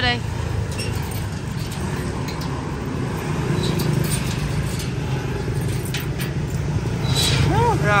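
Steady low rumble of street traffic, with a few faint scattered clicks. A short voice comes near the end.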